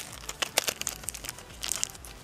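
Small clear plastic packaging bag crinkling as it is handled: a run of quick, irregular crackles, with a louder cluster near the end.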